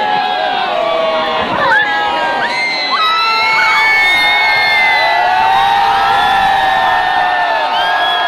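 A large crowd cheering, whooping and shouting with many voices at once, growing louder about three seconds in, as people greet a temple elephant's entry.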